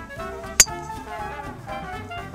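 A junior golfer's driver striking a teed golf ball: one sharp click about half a second in, over background music.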